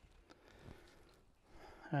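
Near silence, with a faint background and one small brief sound about two thirds of a second in; a man's voice starts right at the end.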